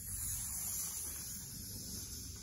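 Cobra breath in yoga: one long hissing exhale through the teeth, like a snake, held steady and with no voice in it.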